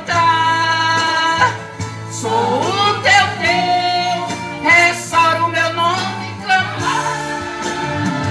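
Gospel worship song (louvor): a solo voice sings long held notes, sliding between them, over a steady instrumental backing.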